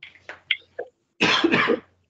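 A person coughing: a few small sounds, then one loud cough a little past the middle.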